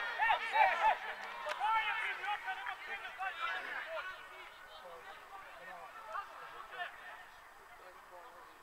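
Several voices shouting and calling at once across a football pitch, loud at first and dying away over the first few seconds.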